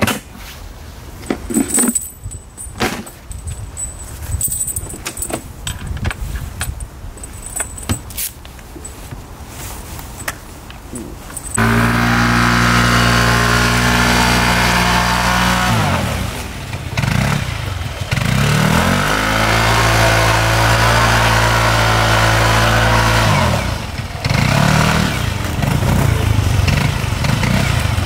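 Clicks and rattles of hands working at a scooter's wiring, then about twelve seconds in the scooter's engine starts abruptly, started from its wires rather than a key, and runs loudly and steadily. Its revs drop and climb back twice.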